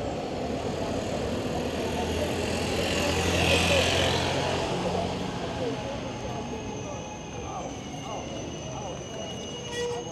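Street and traffic noise heard while riding an e-bike beneath an elevated rail line, swelling loudest about three to four seconds in with a low hum, then easing off as a thin high whine sets in for the second half.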